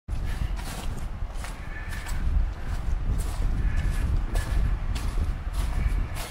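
Footsteps walking through dry leaf litter on a forest trail, a crunch about every two-thirds of a second, over a steady low rumble.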